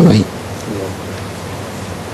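A man's voice breaks off at the start, then a pause filled by steady hiss from an old recording, with a faint voice briefly in the background.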